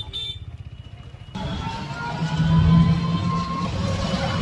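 Street traffic and road noise heard while riding in an open e-rickshaw: a low rumble that jumps suddenly louder about a second and a half in.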